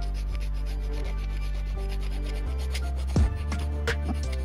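Small hand file rasping on a tiny balsa wood lure body in quick, short strokes, with a louder knock about three seconds in.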